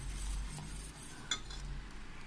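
Wire whisk stirring milk in a stainless steel saucepan, its metal wires scraping and clinking against the pan, with one sharp clink about a second and a half in. The sugar is being whisked in to dissolve it.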